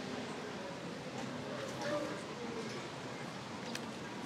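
Quiet background ambience with faint, indistinct voices, in a lull between lines of dialogue.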